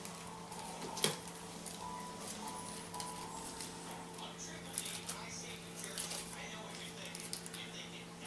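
Scissors snipping and rustling a thin paper coffee filter, faint scattered clicks over a steady low hum, with one sharper click about a second in.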